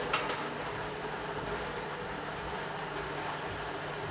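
Steady low background noise with a faint hum, unchanged throughout, with a few faint ticks right at the start.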